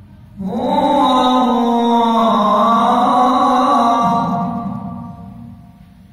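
A man chanting one long, drawn-out melodic phrase into a microphone, in the manner of religious recitation. It starts about half a second in, steps lower in pitch near the four-second mark and fades away before the end.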